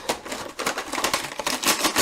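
Rapid clatter of computer keyboard keys being mashed by hand, a dense flurry of clicks.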